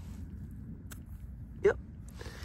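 Fingers prying a metal button out of wet, clayey soil, with faint crumbling and one sharp click a little under a second in, over a steady low rumble.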